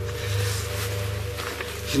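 Background music: a low, steady ambient drone of held tones over a faint hiss.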